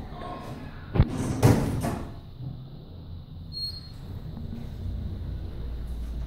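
Kone elevator's two-speed sliding doors closing, with two loud knocks about a second in and a brief rush. This is followed by a short high electronic beep, then a low hum building as the car begins to travel.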